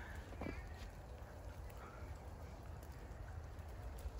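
Quiet outdoor ambience: a faint steady low rumble with a few faint short sounds in the first couple of seconds.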